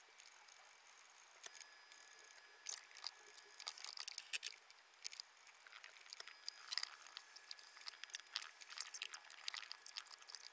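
Faint, scattered small clicks, taps and rustles of chopped red bell pepper being handled and gathered by hand on a wooden cutting board.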